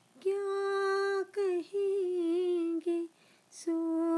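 A solo voice singing a ghazal in long, held notes, with three short breaks, the pitch stepping down slightly through each phrase. No accompaniment is heard.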